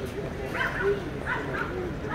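A dog barking: several short barks in quick succession, in two bunches about a second apart.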